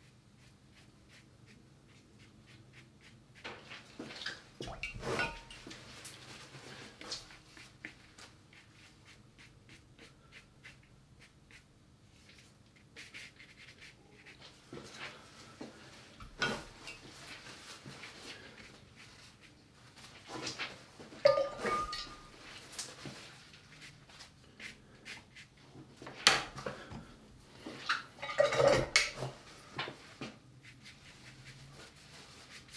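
Hands at work at a watercolour table: brushes stroking and scrubbing on paper, and brushes and paint pots being handled and set down, giving scattered light knocks, clinks and scrapes, busiest near the end.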